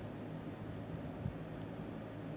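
Steady low hum and hiss of room background, with one soft knock just over a second in.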